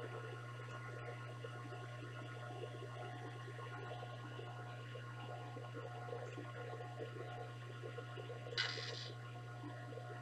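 Rotary phase converter's idler motor and transformer running with a steady low mains hum while their supply is turned down through a variac toward 208 volts. A brief rustle comes near the end.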